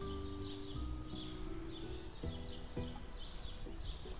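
Small birds chirping in quick repeated series, over a low outdoor rumble.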